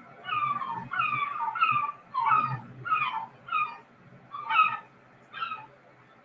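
A recorded gull calling: a series of about a dozen short yelping notes, each falling in pitch, coming about two a second and growing sparser and fainter after about four seconds.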